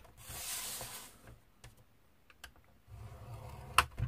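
Card strips and a scoring stylus handled on a plastic scoring board: a short scrape in the first second, then a few light clicks and a sharp tap near the end.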